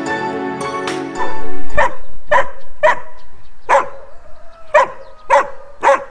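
A dog barks about seven times at uneven intervals, starting about two seconds in. Background music stops about a second in, just before a short loud rush of noise.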